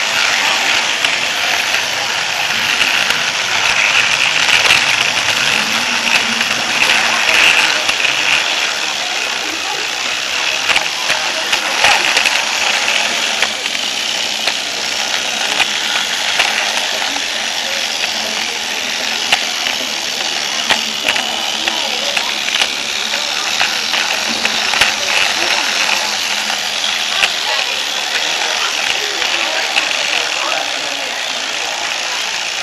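Motorized toy train running on plastic track, heard close up from on board: its small electric motor and gears whirring with a steady rattle, with many small clicks along the way.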